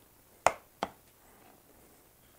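Two sharp clicks a little under half a second apart, from a plastic wood-glue bottle being handled and set down on the wooden workbench.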